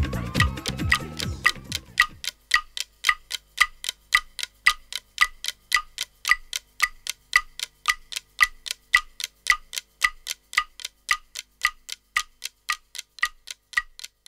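A song fades out in the first two seconds, then a steady clock-like ticking follows, about four ticks a second.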